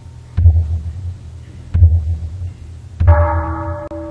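Deep, low drum strikes about every 1.3 s, three of them. The third, near the end, comes together with a large temple bell that rings on with several steady tones.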